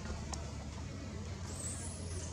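Steady low background rumble, with one faint click about a third of a second in and a thin, high whistling glide near the end.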